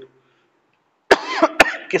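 About a second of silence, then a man coughs briefly, two sharp coughs half a second apart, running straight into his speaking voice.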